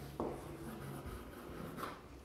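Chalk writing on a blackboard: faint scratching strokes, with a sharper stroke about a quarter second in.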